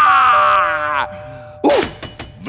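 A cartoon villain's deep maniacal laugh ending in one long drawn-out note that slides down in pitch and fades over about a second, over a held music tone. A short, sudden burst of sound cuts in near the end.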